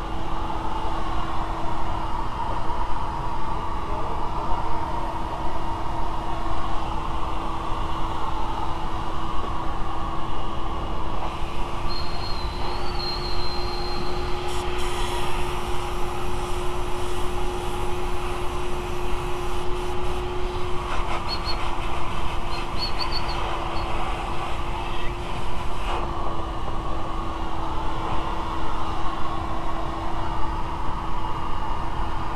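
A machine running steadily with a constant hum. From about 11 to 26 seconds in, a hissing rush joins it and the hum rises slightly in pitch, then both settle back.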